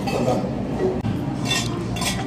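A metal spoon clinking against a stainless steel cup, a few short ringing clinks in the second half.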